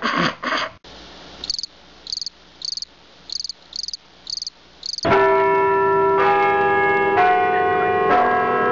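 Crickets chirping, seven short high chirps about two-thirds of a second apart over a faint hiss; about five seconds in, church bells start ringing loudly, with new strikes about once a second. A louder noisy sound cuts off just under a second in.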